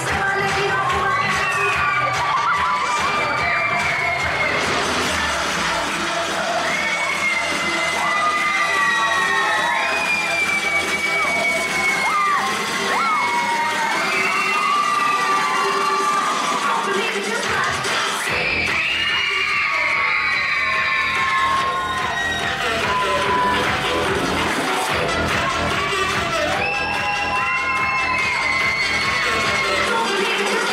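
A crowd of children shouting and cheering over loud dance music with a steady beat. The beat drops out for about ten seconds in the middle and comes back.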